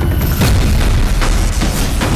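Dramatic background score with a deep, heavy booming low end and several sharp percussive hits.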